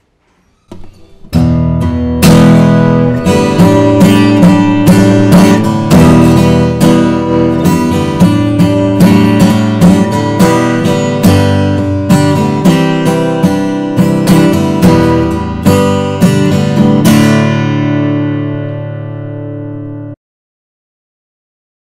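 A Taylor Custom Style 1 acoustic guitar with a solid koa top and koa body, played in a run of ringing chords that starts about a second in. Near the end, a last chord is left to ring out and fade.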